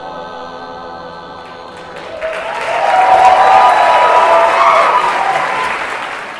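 An a cappella vocal group holds its final chord, which stops a little under two seconds in; then the audience breaks into loud applause and cheering.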